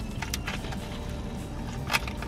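Biting into and chewing the crisp, crusty shell of a fried peach pie: a few soft crunches, with one sharper crunch near the end, over a low steady car-cabin hum.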